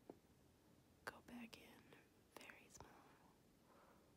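Near silence: room tone with a few faint clicks and soft breathy sounds.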